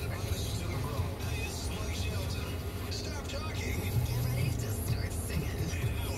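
Steady low rumble of a car's engine and road noise heard inside the cabin while driving, with country music with vocals playing on the car radio.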